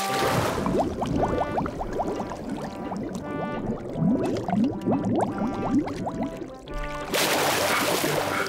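Cartoon water sound effects: a splash as a swimmer goes under, then a stream of short rising underwater bubble bloops over light background music, and a second splash about seven seconds in as he breaks the surface.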